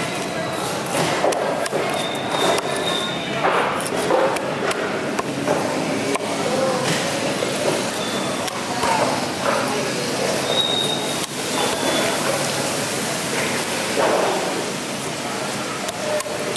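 Indistinct voices talking in the background, with a few sharp knocks of a cleaver chopping through mahi mahi steaks onto a chopping block.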